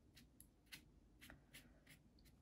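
Near silence, with faint short strokes of a round watercolour brush on wet watercolour paper, a few light strokes each second.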